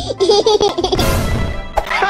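A cartoon character's voice giggling in a quick run of short laughs over background music, followed by a hiss about a second in.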